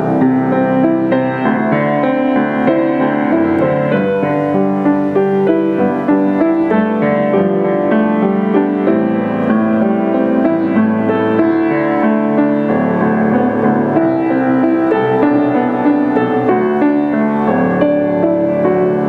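Young Chang PG-157 baby grand piano played with both hands: a continuous flowing passage of chords and melody at a steady level.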